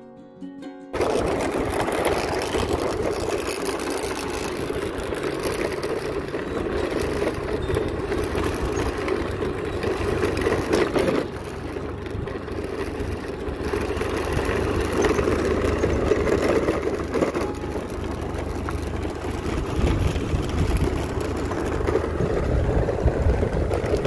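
Motorbike running along a road, its engine noise mixed with heavy wind rush on the microphone, cutting in suddenly about a second in and holding steady after that.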